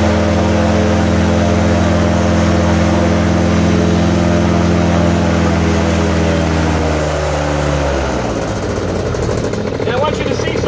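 Fresh Breeze paramotor engine and propeller running steadily, then slowing with a falling pitch about seven seconds in.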